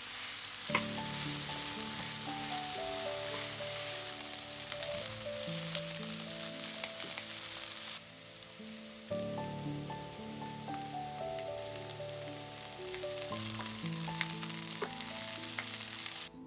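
Chopped onions sizzling steadily as they fry in oil in a frying pan, with occasional sharp crackles.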